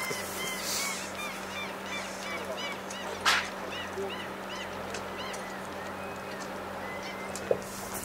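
Water birds give short repeated calls throughout. A little over three seconds in comes one short, sharp rush of breath, a common dolphin blowing as it surfaces.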